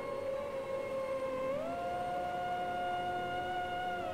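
Quiet background music: a single held tone that glides up in pitch about one and a half seconds in, holds, and slides back down near the end.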